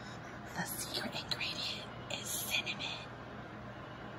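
A person whispering: a few short, breathy phrases over about two and a half seconds, with no voiced tone.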